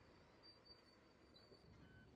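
Near silence: only a faint, steady low hiss.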